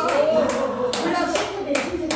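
Hands clapping in a steady rhythm, about two claps a second, over a woman's voice through the microphone.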